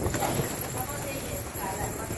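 A flock of domestic pigeons on a concrete floor: scattered short knocks and scuffles from the birds feeding, with wing flaps as a few of them flutter up near the end.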